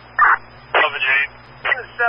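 Fire-department radio traffic heard over a scanner: short, clipped bursts of a man's voice with a steady low hum underneath.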